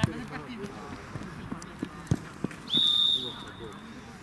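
A football kicked with a sharp thud, two more thuds of the ball about two seconds later, then a referee's whistle blown in one short blast near the end, trailing off, over players' voices.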